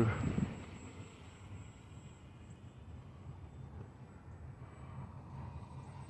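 Faint, steady hum of a distant electric RC plane, the HobbyZone Carbon Cub S+'s motor and propeller, heard from the ground as it flies overhead, a little clearer near the end.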